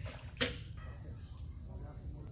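Steady high-pitched drone of insects, with a low rumble underneath and a single sharp knock about half a second in.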